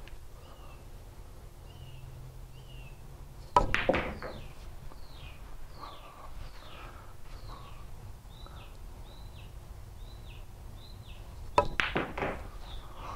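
Sharp clicks of a cue striking the cue ball and billiard balls knocking together, a third of the way in and again near the end. Between them a bird calls over and over, a short falling note about twice a second.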